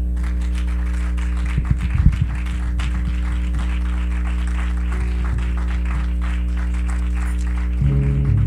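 Held chords on a keyboard instrument, with scattered applause from the congregation marking the end of the sermon; the chord changes near the end.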